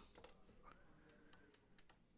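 Near silence with a few faint, scattered clicks from a stylus writing on a tablet.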